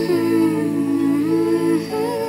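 A voice humming a slow lullaby melody in long held notes over soft musical accompaniment.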